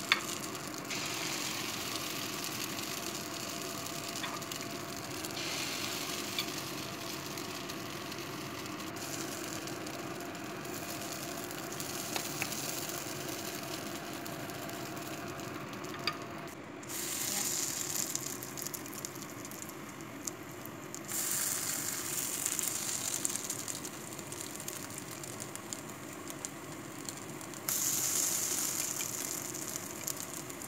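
Tuna, egg and carrot patties sizzling as they fry in oil in a four-cup nonstick pan. The sizzle grows louder for a few seconds at a time in the second half, with a few sharp clicks.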